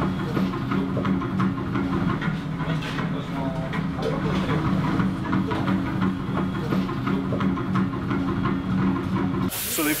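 Taiko drumming over a steady low hum. Near the end it gives way suddenly to a loud hiss of food frying in a wok.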